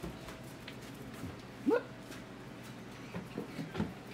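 A few short, quick, rising squeaks from a young animal near the end, after a woman calls a rising "whoop".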